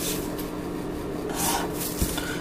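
A pen or marker scratching across a writing surface in short strokes as a diagram is drawn, with one stroke just after the start and another around a second and a half in, over a faint steady hum.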